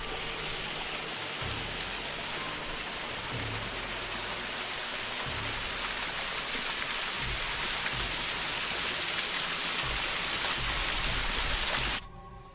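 Rushing, splashing water of a small waterfall cascading down a rock face, a steady even hiss that grows a little louder toward the end, with occasional low rumbles underneath.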